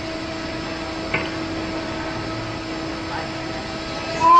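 Steady machinery hum with a faint steady tone, from the crane holding the race car's platform aloft, under a faint murmur of voices; a single click about a second in.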